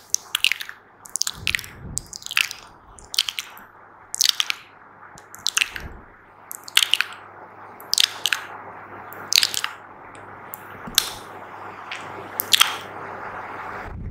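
Close-miked wet mouth sounds: sharp, moist clicks and pops, roughly one or two a second. In the second half a steady rustle grows louder under them, from fingers rubbing the microphone's grille.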